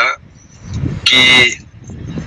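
A car horn sounds once, briefly, about a second in, a steady honk over a low vehicle rumble.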